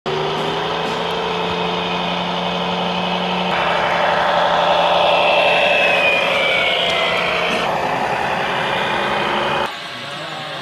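Radio-controlled model semi-truck driving past close by, with a steady engine-like drone. A higher whine falls in pitch a little past the middle. The sound drops off abruptly near the end.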